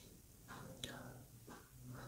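Near silence between spoken words: faint room tone with a low hum, a soft breath or whisper and a small click just under a second in.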